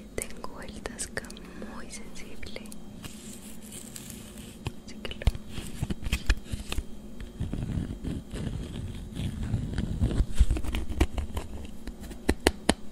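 Fingertips tapping, picking and scratching at a plastic tray of false eyelash clusters held close to a binaural microphone, making irregular crisp clicks and crackles that grow busier and louder in the second half.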